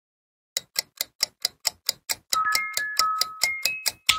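Intro jingle: clock-like ticking, about four or five ticks a second, starting about half a second in, joined about halfway through by a bell-like chime melody.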